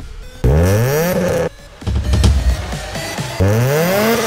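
Electronic music with a car engine revved hard twice, its pitch climbing each time. The first rev comes about half a second in and cuts off abruptly a second later; the second starts near the end.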